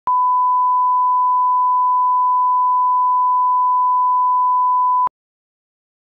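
Steady single-pitch test tone of the kind laid under colour bars, a line-up reference for setting audio levels. It runs unchanged for about five seconds and cuts off suddenly with a slight click.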